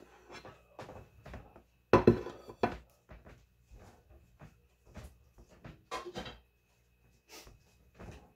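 Mashed potatoes being spooned onto a sandwich on a plate: a string of short clinks and knocks of a utensil against dishes, loudest about two seconds in.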